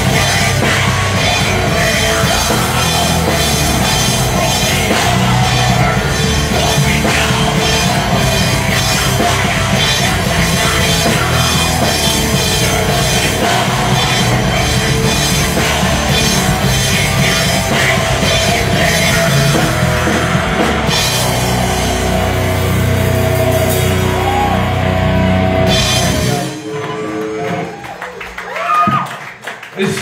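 Live rock band playing loud, with electric guitar through an amplifier and a drum kit. The song stops about three and a half seconds before the end, and the sound drops away sharply.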